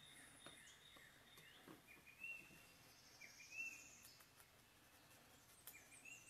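Near silence, with faint birds chirping in the background and a brief high trill about three seconds in.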